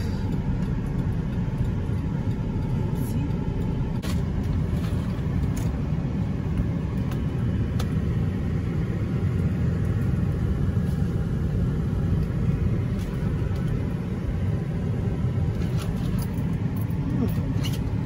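Cab noise of a GMC truck driving slowly through a turn: a steady low rumble from the engine and tyres, heard from inside the cab.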